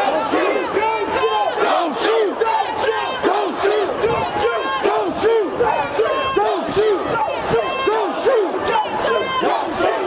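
Crowd of marching protesters chanting loudly in unison: a rhythmic shouted chant of about two beats a second, repeated over and over.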